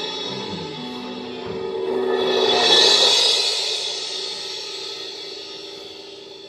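A live chamber ensemble plays an avant-garde piece: a cymbal swells to a peak about halfway through and then fades away, over held notes from the instruments underneath.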